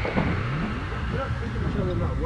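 A warped, pitch-bending sound in the song's closing seconds: one tone glides steadily upward early on, then wavering, voice-like pitches bend up and down.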